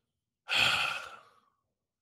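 A man's single audible breath, a sigh-like rush of air about half a second in that fades out within a second.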